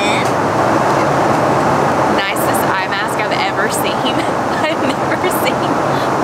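Steady jet airliner cabin noise in flight, the even rush of airflow and engines. A woman's short, high-pitched wordless vocal sounds come in about two seconds in.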